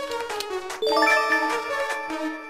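Background music with a regular tick, then a chime struck about a second in that rings on, sounding as the question's countdown timer runs out.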